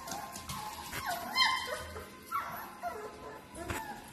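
Bernese Mountain Dog puppies yipping and barking as they play-fight, in short high calls, the loudest about a second and a half in.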